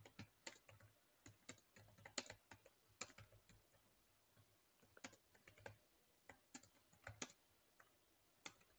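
Faint keystrokes on a computer keyboard: irregular clusters of quick key clicks with short pauses, one longer pause about halfway through.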